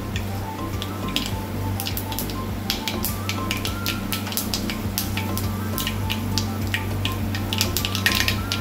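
Mustard seeds, cumin and dried red chillies frying in hot coconut oil in a clay pot: irregular sharp pops and a light sizzle as the seeds splutter, thickest for a couple of seconds early on and again near the end. Background music plays throughout.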